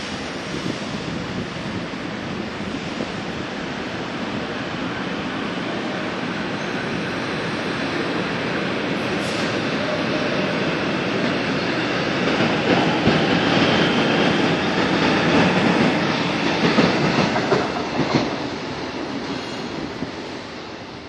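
São Paulo Metro train pulling out of a platform. Its running noise builds as it gathers speed, with a run of rhythmic wheel clatter as the cars pass about halfway through, then fades near the end.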